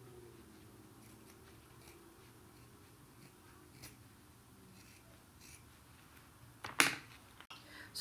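Scissors snipping through cotton plaid fabric, faint and intermittent. A sudden louder noise comes near the end.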